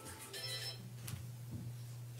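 A brief electronic tune of several steady high notes sounding together about half a second in, over a steady low electrical hum in the room, with a light click about a second in.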